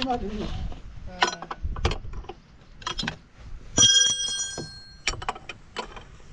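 Light metal knocks and clicks as the engine's cooling fan is handled, and about four seconds in a sharp metallic strike that rings for about a second.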